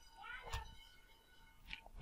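Quiet room tone with a faint steady electrical whine; a little before half a second in, a brief faint wavering cry, and about half a second in, a single computer keyboard key click.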